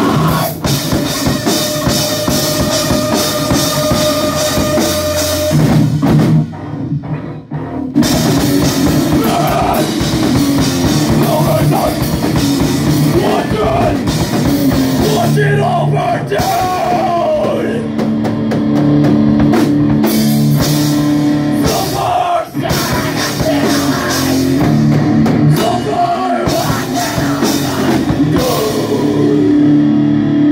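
A heavy rock band playing live: distorted electric guitars and a drum kit pounding along. About six seconds in the band breaks off for a moment, then crashes back in.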